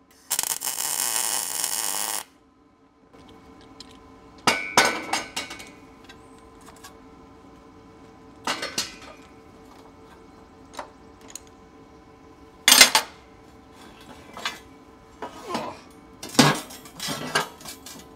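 A MIG welder laying a weld on a steel angle-iron bracket, a steady sizzling hiss for about two seconds at the start. Then come a series of sharp metal clanks and clinks as steel clamps are loosened and the bracket is knocked and lifted on the steel welding table.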